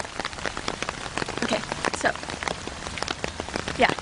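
Rain falling on an umbrella held overhead: a dense, steady run of separate drop hits on the fabric.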